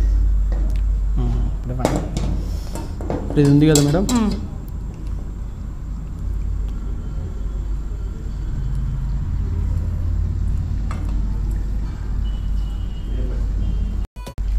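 A few light clinks of steel bowls and utensils being handled, over a steady low hum. A short burst of speech comes about three to four seconds in.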